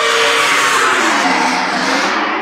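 Film background-score whoosh sound effect: a loud, noisy sweep that slowly falls in pitch.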